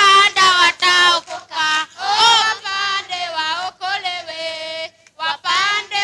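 Children singing a song in short sung phrases, with a brief pause about five seconds in.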